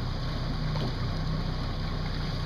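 Steady low hum of a small boat engine running at an even speed, with a faint wash of water under it.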